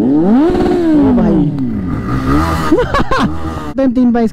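Motorcycle engine revved up and back down, its pitch climbing then falling over about a second and a half. A second, shorter rise and fall comes about three seconds in.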